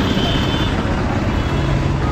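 Busy city street traffic: vehicle engines running as a steady low noise, with a faint high tone briefly in the first half-second.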